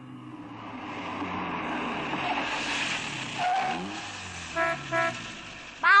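A car pulling up, its engine noise swelling and then easing off, followed by two quick honks of the car horn near the end.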